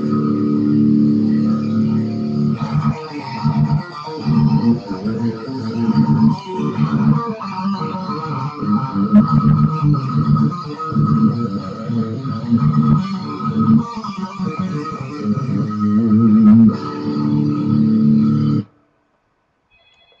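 Ibanez RG5EX1 electric guitar tuned to drop D, playing heavy, low metal riffs. It stops abruptly near the end.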